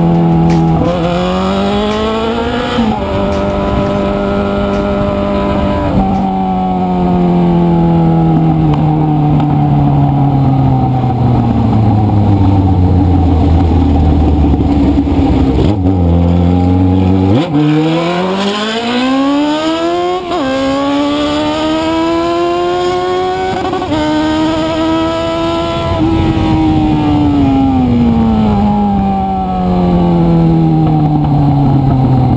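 Yamaha motorcycle engine riding through its gears: revs climb and drop sharply at two upshifts in the first few seconds, fall away slowly as the bike slows for about ten seconds, then climb hard after about 17 seconds through two more upshifts and fall again near the end as it slows.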